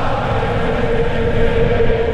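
Intro music: a held, choir-like tone over a steady low rumble.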